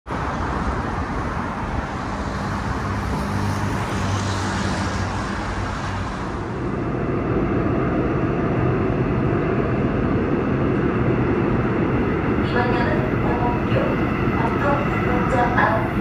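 Street traffic noise for the first six seconds or so. Then the steady running rumble of a Seoul Subway Line 5 train, heard from inside the car, with a recorded onboard announcement over it from about twelve seconds in as the train nears the station.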